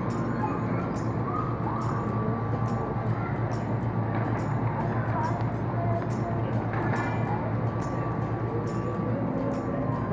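Steady low hum and general noise of a large indoor hall, with faint music and distant voices mixed in.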